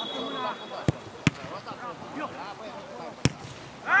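A football being kicked during play: sharp thumps, two close together about a second in and a louder one a little past three seconds, with a referee's whistle fading out just before the first and players shouting throughout.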